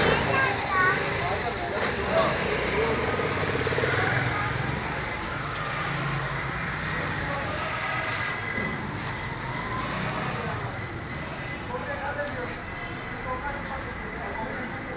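Indistinct voices talking in the background over steady outdoor ambience.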